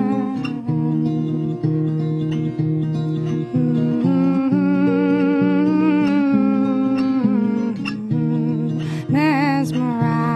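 Steel-string acoustic guitar played as a slow picked accompaniment, with a woman's voice holding long, wavering notes without clear words above it.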